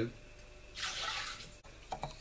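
Liquid pouring briefly, a short hissing rush lasting under a second, starting about a second in.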